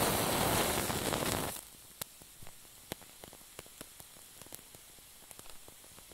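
A lighter's flame hissing as it is held to a wick, cutting off about a second and a half in. Then the lit wick burns quietly with scattered faint crackles and ticks.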